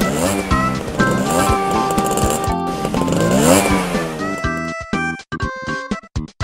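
Upbeat background music overlaid with a car engine sound effect revving up in rising pitch glides, twice. About four and a half seconds in, it switches to a choppy, staccato tune.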